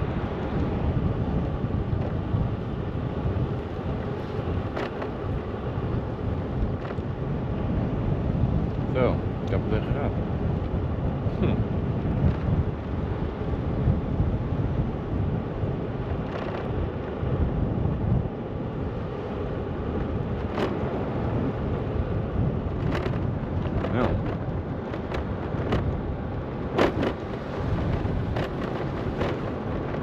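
Wind buffeting the microphone with a steady low rumble from riding along a paved path, broken by a few short clicks and a brief squeak.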